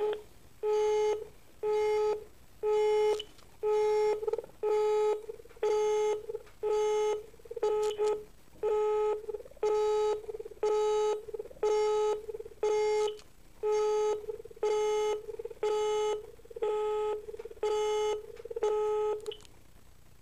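Telephone busy tone from a Siemens phone handset on a blocked call: one steady mid-pitched beep about half a second long, repeating a little faster than once a second. It stops shortly before the end.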